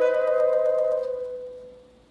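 Saxophone quartet holding a sustained chord. The higher note stops about halfway through, and the lower note fades away to near silence by the end.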